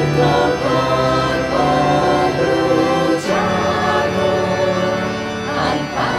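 Choir singing a hymn over instrumental accompaniment, in long held phrases that break briefly about three seconds in and again near the end.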